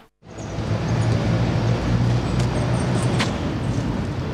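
Street traffic noise: a steady low rumble of vehicles with a few faint clicks, coming in after a moment of silence at the start.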